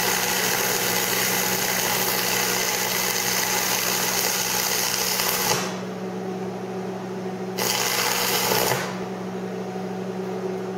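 AC stick welding with a 3/32-inch 7014 rod on a Lincoln Electric buzzbox transformer welder at 115 amps: a steady arc crackle over the welder's low AC hum. The crackle stops about five and a half seconds in, comes back for about a second, then stops, leaving the hum. At this setting the puddle ran hot and liquid and the bead came out rough.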